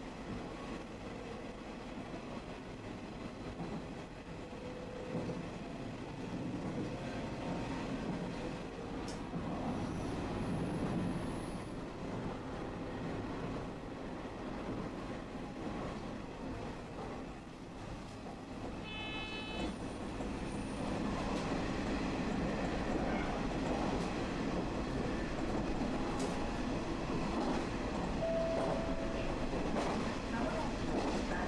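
Diesel railcar running along the line, heard from inside the front of the car: steady engine and wheel-on-rail noise that grows a little louder about two-thirds of the way through. A short high beep comes just before that.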